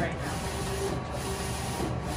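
DTF transfer printer running a full-colour print on film: a steady mechanical running noise whose upper range dips slightly about once a second as the print head shuttles.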